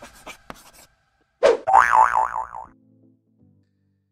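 Cartoon 'boing' sound effect: a sharp hit about a second and a half in, then a springy tone wobbling rapidly up and down for about a second before it dies away.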